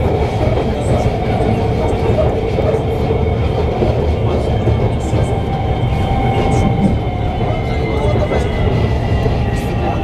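Inside the carriage of a moving Orange Line electric metro train: a steady running noise of the train on its track, with a faint high whine above it.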